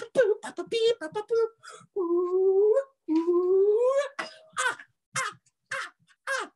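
A man vocalizing to his own dance: a quick run of short sung syllables, then two long held notes, the second rising at its end, then a few short vocal bursts.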